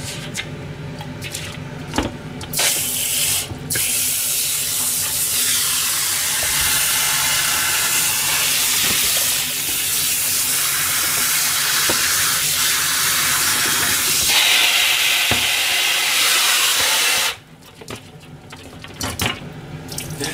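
Kitchen tap running into a stainless steel bowl as sardines are rinsed by hand. The water comes on a couple of seconds in, breaks off briefly, and is shut off a few seconds before the end, with small knocks of handling before and after.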